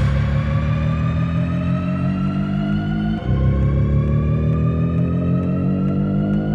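Techno DJ mix in a breakdown: the kick drum has dropped out, leaving a sustained low synth drone whose chord changes about three seconds in, under slowly rising synth tones that sweep upward like a riser, with faint high ticks keeping time.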